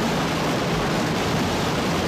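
Waterfall rushing: a loud, steady roar of falling water.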